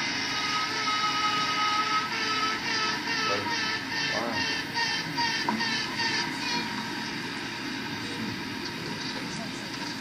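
Honey bee virgin queen piping, played back through room speakers: one long held note, then a run of short pulsed toots about three a second, fading after about seven seconds. Queens pipe like this to signal one another through the comb before fighting.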